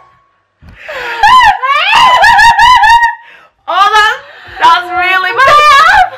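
Women shrieking, wailing and laughing in disgust at a foul-tasting Bean Boozled jelly bean. The high, wavering cries start about half a second in, break off briefly midway, then go on again.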